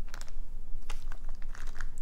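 Handling noise from small toy items being moved about: scattered light clicks and crinkling.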